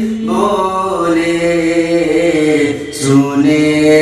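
A male voice singing a naat, an Islamic devotional song, without instruments, in long held notes that bend and slide in pitch. A short breath or hiss comes about three seconds in before the next phrase.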